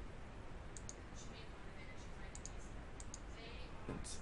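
Faint computer mouse clicks, several light ticks, some in quick pairs, over a low steady background hiss.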